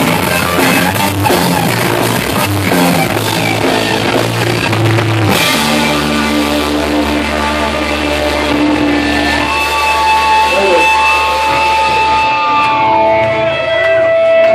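Punk band playing live with distorted electric guitar, bass and drums. The fast playing stops abruptly about five seconds in, leaving a held chord ringing, then guitar feedback tones that bend up and down near the end of the song.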